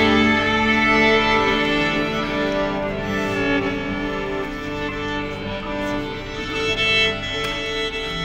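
Orchestral strings, led by violins, playing sustained notes that shift every second or two.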